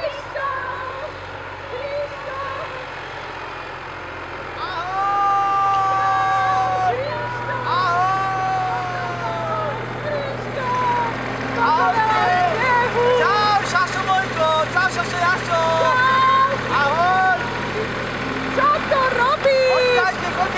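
Long drawn-out shouted calls of 'Ahoooj!' and other calling voices over a small front loader's engine, which runs with a steady low hum from about four seconds in.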